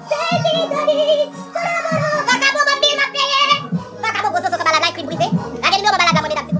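Music playing: a song with a sung lead vocal wavering in pitch over held bass notes and a drum beat.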